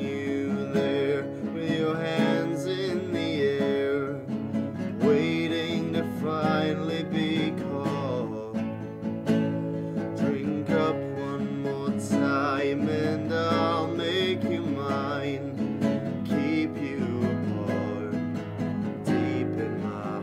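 A man singing with his own accompaniment on a nylon-string classical guitar, played steadily throughout.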